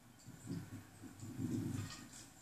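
A dog making low vocal sounds: a short one about half a second in, then a longer, louder one near the end.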